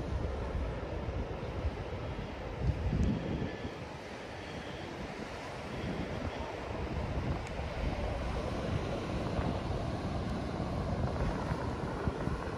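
Wind buffeting the microphone in uneven gusts over the wash of surf breaking on rocks, with a stronger gust about three seconds in.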